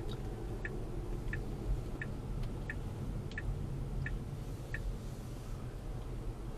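Tesla's turn-signal indicator ticking evenly about one and a half times a second, stopping about five seconds in, over a steady low rumble of road and cabin noise.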